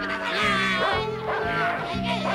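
A cartoon dog yelps a few times over background music with a steady, repeating bass line.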